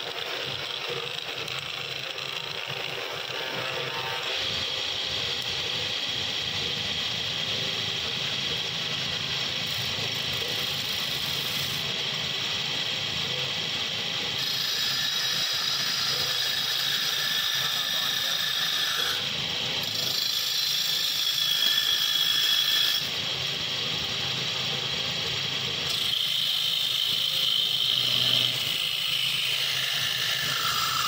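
Belt-driven wood lathe running while a hand-held turning tool cuts shavings from the spinning wooden blank. The cutting noise is continuous and shifts in tone several times as the cut changes.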